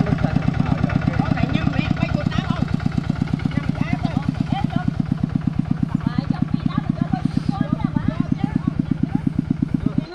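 Single-cylinder diesel engine of a two-wheel walking tractor running at a steady idle, a loud even chugging of about six or seven beats a second that cuts off suddenly at the very end.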